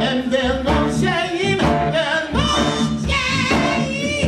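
Live band playing, with sustained sung vocals that waver in pitch over bass, guitar and a steady drum beat.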